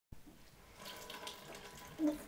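Faint, irregular trickling of liquid squeezed out of a soaked ShamWow absorbent cloth held to the mouth.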